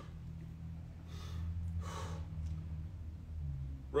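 A man breathing, two soft breaths about a second apart, over a steady low hum.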